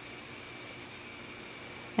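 Steady hiss with a few faint, high, steady tones: the recording's background noise floor, with no distinct sound from the crocheting.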